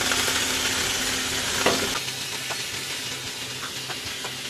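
Beef steak bites sizzling in hot butter in a frying pan, the sizzle easing a little after about two seconds. A couple of light clicks of a utensil against the pan.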